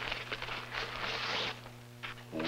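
Paper wrapping rustling and crinkling as a present is unwrapped by hand, in quick noisy bursts that die down about one and a half seconds in.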